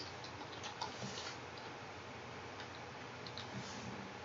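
Faint, irregular clicks of keys being pressed while a short word is typed, a few in quick succession about a second in and again near the end, over a steady low hiss.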